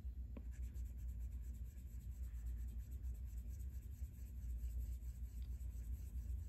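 Apple Pencil 2 tip stroking lightly over an iPad Pro's glass screen, faint and repeated, with a small tick near the start, over a low steady hum.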